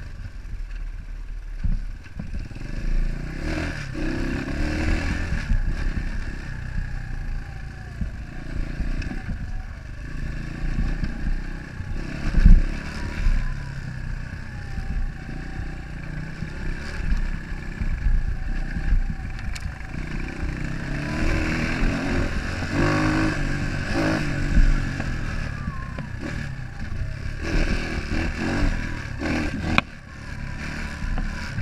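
Enduro dirt bike's engine running under rider throttle, its pitch rising and falling as it rides over a rutted dirt track, with the bike rattling and knocking over the bumps and one sharp loud knock a little before halfway through.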